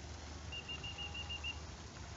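A bird calling: a quick run of about seven short, high notes on one pitch, lasting about a second, over a steady low background rumble.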